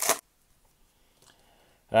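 Foil wrapper of a hockey card pack crinkling as it is torn open, cutting off a fraction of a second in. Near silence follows, with a few faint small clicks.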